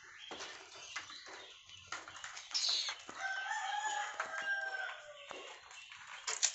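A rooster crows once, a long call of about two seconds starting about three seconds in. Under it is scratchy rustling of dry palm fronds as kittens tussle among them.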